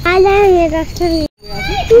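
Children's voices, high-pitched speech and calls, broken by a brief silent gap just over a second in.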